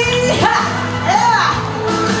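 A woman singing a Malay song into a microphone over amplified backing music, holding a note at the start and then sliding through a phrase.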